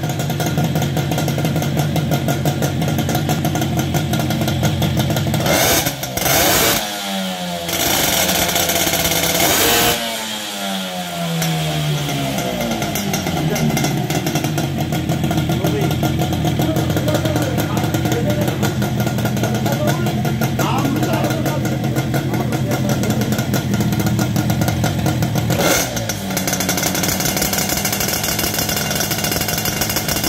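Twin-cylinder two-stroke Mobylette moped engine running at a fast idle and revved hard several times, the pitch falling back each time, most sharply about a third of the way in.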